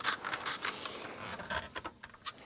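Handheld steam iron sliding back and forth over a pieced quilt block on a pressing mat: fabric rustling and scraping under the soleplate, with a few light clicks near the end.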